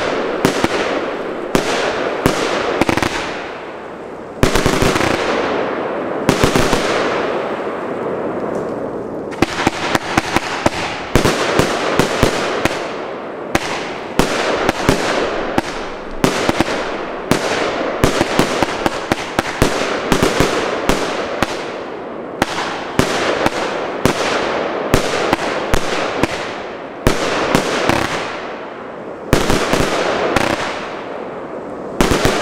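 Heron Wolff 75-shot compound fireworks battery firing: a rapid, uneven string of shots and aerial bursts, many followed by a fading hiss.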